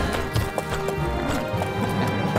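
Hooves clip-clopping in a steady series of sharp knocks over film score music.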